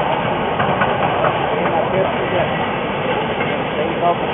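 Prussian P8 class steam locomotive 38 3199 passing with its passenger train, the coaches rolling by on the rails behind it.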